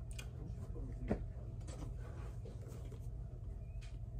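Faint handling of a cardboard headphone box, with one light knock about a second in, over a steady low hum.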